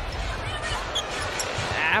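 Basketball arena sound during live play: a steady crowd hubbub with a basketball being dribbled on the hardwood court.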